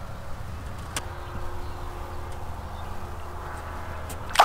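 Steady low motor hum, with one sharp click about a second in.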